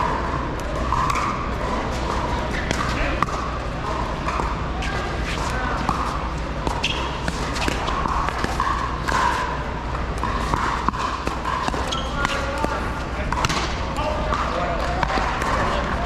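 Pickleball paddles striking the plastic ball in a doubles rally: a run of sharp pops at uneven intervals, over a steady murmur of voices.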